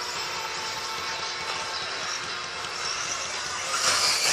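Radio-controlled off-road buggies running on a dirt track: a steady, even whir with no clear pitch.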